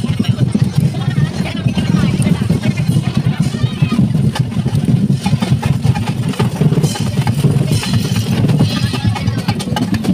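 Loud crowd voices over heavy, muddy drumming. A dense low-pitched pounding dominates the sound without a break.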